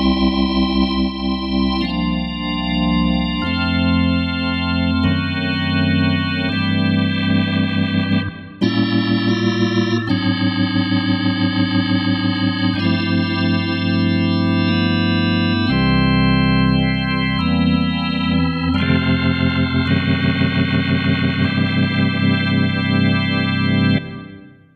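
Yamaha Reface YC organ playing sustained chords that change every second or two, with a brief gap about eight seconds in.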